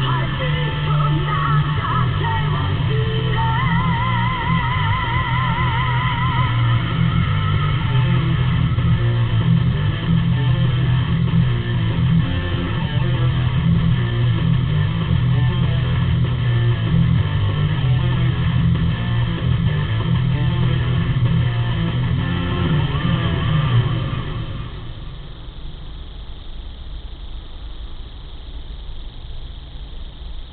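Music with guitar playing from a car stereo, heard inside the car's cabin; it drops in volume about 24 seconds in.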